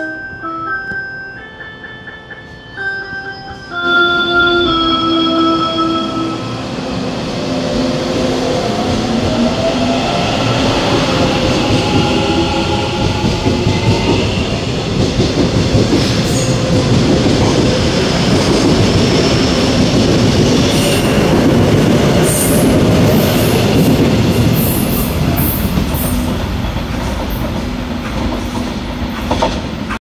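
Korail Line 4 Class 341000 electric multiple unit departing and accelerating past. First its traction inverter and motors give a series of steady tones that step in pitch. Then a whine rises in pitch, and as the cars go by it gives way to steady wheel-and-rail noise with sharp high clicks.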